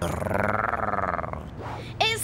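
A man's drawn-out villain's laugh, a rapid pulsing cackle that weakens near the end.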